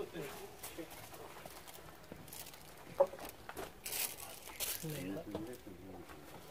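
Plastic bags rustling and crinkling on a table, with a single sharp click about three seconds in. Low voices murmur in the background.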